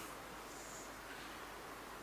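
Low, steady room hiss with one faint, brief scratch of a whiteboard marker about two-thirds of a second in.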